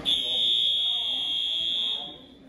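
Fire alarm sounding one steady, high-pitched tone that starts abruptly and cuts off after about two seconds, with a roomful of people talking faintly beneath it. It is the signal for a practice evacuation.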